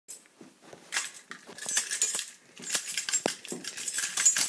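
Irregular bursts of crinkly rustling and clinking as something is handled close by.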